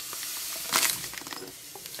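Fine sand pouring from a plastic zip bag onto the floor of an empty glass tank: a steady hiss that swells briefly just under a second in and then thins to a trickle.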